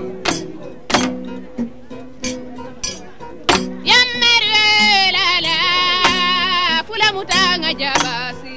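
Kora plucked in a repeating low pattern, with sharp percussive strikes recurring at a regular beat. About four seconds in, a high voice joins with a long wavering sung line for about three seconds, then drops out.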